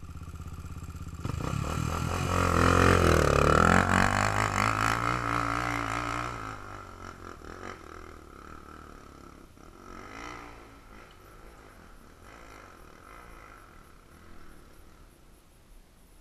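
ATV engine revving hard as a quad pulls away up a dirt trail, loudest about three seconds in, its pitch rising and falling with the throttle, then fading over the next few seconds to a faint engine sound.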